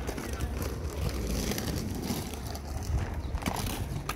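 Inline skates' plastic frames and wheels clacking and rolling on stone steps and paving: an irregular run of short knocks over a low rumble.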